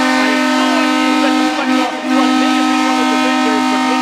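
Arena goal horn sounding a long, loud, steady blast with a brief break about two seconds in, over a cheering crowd: the signal of a home-team goal.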